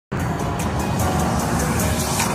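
News-channel logo intro music: a dense, noisy build-up with a regular high pulse, starting abruptly.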